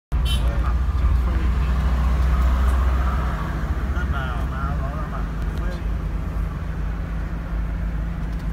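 Steady low rumble of road and engine noise heard from inside a moving car's cabin, easing a little after about three seconds.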